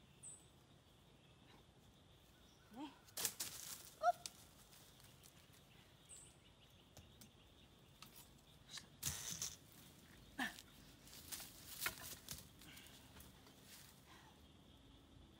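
Intermittent rustling and scraping of dry leaf litter and sticks as a snare is set by hand at the foot of a sapling, in a few short bursts, the loudest about three seconds in and around nine and twelve seconds. A few brief rising chirps and a faint steady high tone sit behind.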